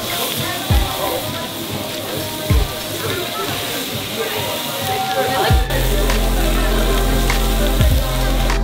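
Meat sizzling on a tabletop Korean barbecue griddle, with a steady hiss under background music. The music has a thumping beat, and a steady bass line comes in about two-thirds of the way through.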